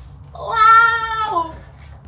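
A young child's voice in one long, high-pitched drawn-out call, held for about a second on a steady pitch and then dropping away.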